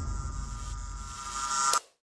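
Synthesized electronic logo sting: a steady hum with sustained high tones that eases off, swells again and cuts off suddenly near the end.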